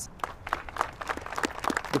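A small crowd applauding: many quick, overlapping hand claps.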